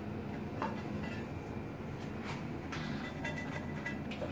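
A few faint, light clicks and scrapes as a ceramic tile piece is handled and marked along its edge with a pencil, over a low steady room hum.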